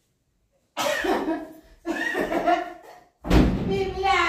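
A person's voice in three loud, wordless bursts, the first about a second in.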